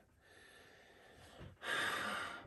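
A man sniffing in sharply through the nose near the end, smelling the contents of an old glass Coca-Cola bottle held up to his face.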